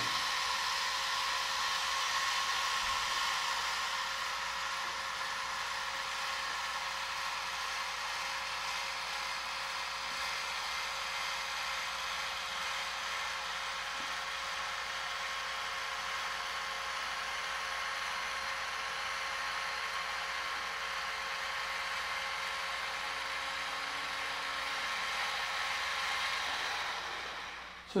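Sky-Watcher AZ-GTi alt-azimuth mount's motors slewing at full speed on an automatic GoTo during star alignment: a steady whine with several held tones. It fades out and stops near the end as the mount reaches its target.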